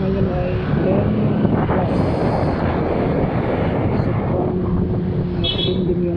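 A motorcycle engine running while it is ridden through traffic, with wind noise on the microphone. A short high-pitched beep sounds near the end.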